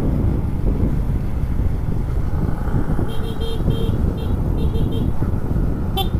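Motorcycle riding at road speed with a steady low rumble of engine and wind on the helmet microphone. About three seconds in, a string of short beeps in quick groups of two or three, like a horn tapped several times, goes on for about two seconds.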